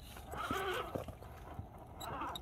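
Axial SCX10 RC rock crawler's electric motor and gearbox whining as it climbs over rock, the pitch wavering, loudest from about half a second to one second in. A few knocks of tyres and chassis on the stone come with it.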